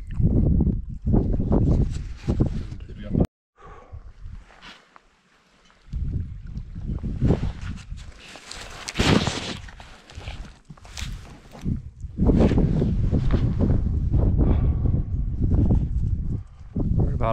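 Wind rumbling and buffeting on the camera microphone outdoors, rising and falling irregularly, loudest in the last few seconds, with a brief cut to silence about three seconds in.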